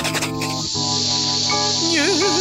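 Cartoon bomb fuse lit with a sharp burst at the start, then hissing steadily as it burns, over background music.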